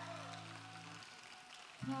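Acoustic guitar notes ringing softly and dying away about a second in, then a new chord picked near the end.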